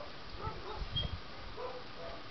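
A few faint, short animal calls in the distance, with a low rumble near the middle.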